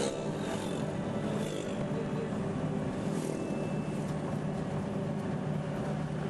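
Car driving along a road, heard from inside the cabin: a steady engine hum with road and tyre noise.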